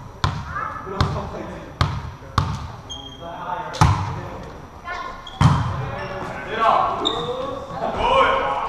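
Volleyball rally in an echoing gym: about six sharp slaps of hands and arms on the ball and the ball striking the wooden floor, with short high squeaks of shoes on the court and players calling out in the second half.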